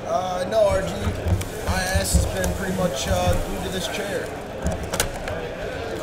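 Indistinct voices of people talking in the background, with a series of low knocks from card packs and a box being handled on a table. A sharp click comes about five seconds in.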